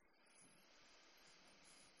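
Near silence with one faint breath, a soft hiss that swells over about two seconds and fades near the end.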